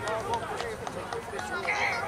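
Spectators on the sideline talking and calling out, several voices overlapping.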